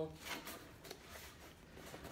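A cardboard box being shaken by hand, with loose items inside quietly shifting and knocking about.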